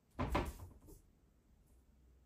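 A cat jumping against a tiled wall and a wicker basket: a short knock and scrabble about a quarter second in, then a faint tap near one second.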